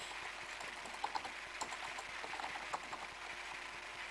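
Faint computer keyboard typing: a few scattered, irregular key clicks over a steady low hiss.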